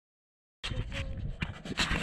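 Camera being handled right against its microphone: irregular rustling and breathy puffs, starting abruptly after about half a second of silence.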